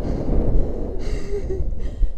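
Steady wind rumbling on the microphone, with a person's frightened breathing and a short faint sigh about one and a half seconds in, as a jumper waits to go.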